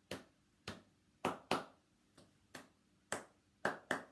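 Hand claps beating out a short rhythm, about nine claps at uneven spacing: a rhythm clapped as a call for listeners to clap back.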